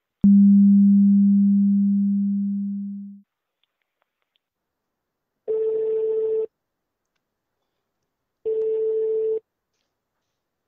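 Telephone line sounds. A click and a low steady tone that fades away over about three seconds as the call cuts off, then two one-second ringing tones about three seconds apart: the ringback of the call being placed again.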